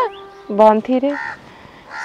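A woman's voice says a few words, then a single short, harsh bird call sounds a little past one second in, and the rest is quiet.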